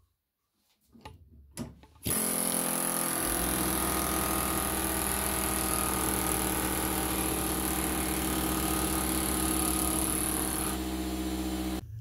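A few clicks, then a power tool starts about two seconds in and runs steadily at a constant pitch, working on a copper-wound motor stator held in a vise to free the copper windings. It cuts off just before the end.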